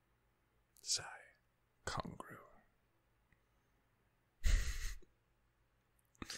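A man's breathy vocal sounds close to the microphone: three short exhalations or whispered mutters, about a second in, about two seconds in, and a stronger one about four and a half seconds in, with near silence between.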